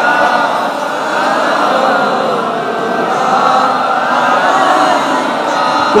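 A large crowd of men chanting together in a sustained chorus of many overlapping voices.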